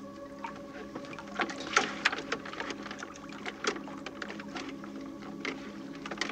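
Irregular light knocks and clicks of someone climbing down and stepping about on a wooden punt, the loudest a little before and a little after two seconds in, over a faint steady drone.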